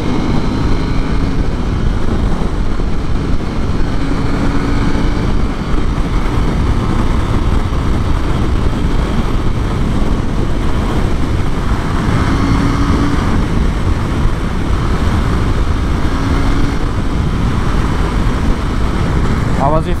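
Heavy wind noise on the microphone at motorway speed, over the steady drone of a KTM 890 Duke R's parallel-twin engine as the bike accelerates from about 130 to over 150 km/h in a high gear.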